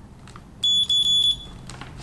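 Continuity beeper of an Ideal 61-704 clamp meter sounding a steady high-pitched beep for under a second, briefly broken partway, signalling a closed circuit between its test leads.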